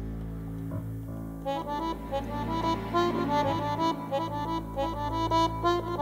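A band playing Balkan jazz, led by a piano accordion. Over a held low chord on bass and keyboard, the accordion breaks into a fast run of short melody notes about a second and a half in.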